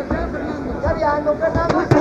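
Indistinct shouting voices around a boxing ring, with two sharp smacks in quick succession near the end as gloved punches land.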